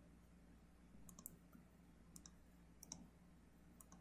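Near silence with a handful of faint computer mouse clicks, some in quick pairs.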